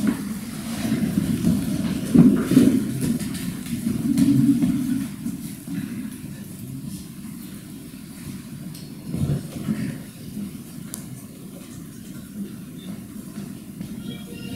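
Chairs scraping and clothes rustling as several people get up from their seats, busiest in the first five seconds. After that comes quieter room noise with a single knock a little after nine seconds.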